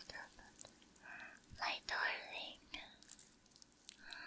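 A woman whispering softly and close to the microphone, in a few short phrases.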